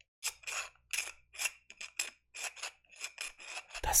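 A thin metal rod scraped and rubbed against a small metal-capped cylinder held right at the microphone, in short rasping strokes about three to four a second.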